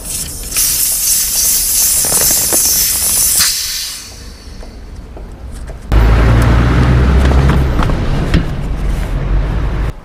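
Air hissing out of a cargo bike's rear tyre valve for about three seconds as the tyre is let down for an inner-tube change. About six seconds in, a louder, low, steady sound with a hum starts suddenly and cuts off at the end.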